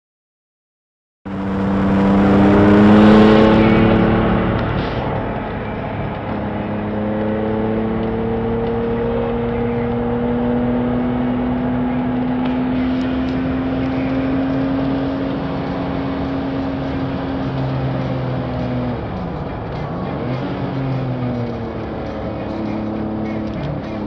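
Tuned turbocharged Porsche 911's flat-six engine heard from inside the cabin under hard acceleration on track. It cuts in loud and high-revving about a second in, then holds a long pull with the pitch rising slowly for over ten seconds, drops sharply as the driver lifts off near the end, and climbs again.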